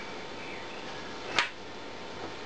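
A single sharp click about one and a half seconds in as the small plug on a float-switch lead is handled and set down on the bench, over a steady low hiss.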